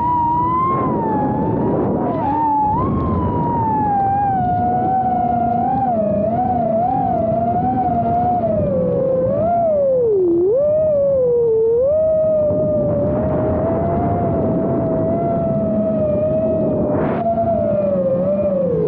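FPV quadcopter's motors and propellers whining, the pitch wavering and swooping up and down with throttle changes, over rushing wind noise.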